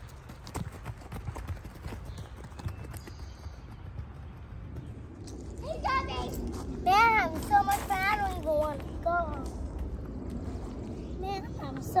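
Children's high-pitched squeals and shouts at play, loudest from about the middle on. Before that there are a few scattered knocks over a low outdoor rumble.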